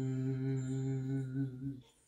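A woman's voice humming one long, low, steady note in a sound-healing chant, which stops near the end.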